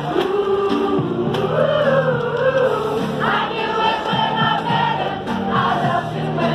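A choir singing Christmas music, holding long notes in several parts, with the voices moving up to higher notes about three seconds in.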